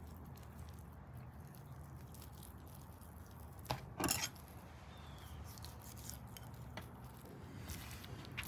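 Quiet room tone with a low hum. About four seconds in, a brief click and then a short soft knock as a trimmed piece of raw beef tenderloin is laid down on a wooden cutting board.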